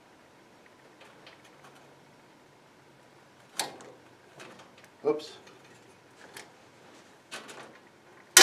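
A few sharp clicks and light knocks from the gas log fireplace's control knob and burner hardware being handled, over faint room tone; the loudest click comes about three and a half seconds in.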